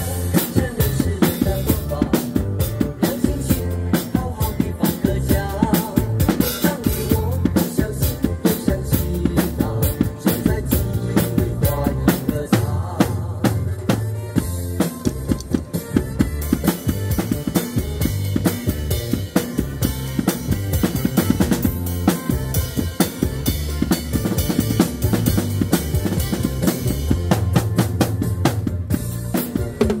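Acoustic drum kit played live with sticks: a steady, continuous groove of snare, bass drum and cymbal hits.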